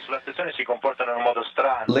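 Speech only: a man talking over a narrow, radio-like voice link.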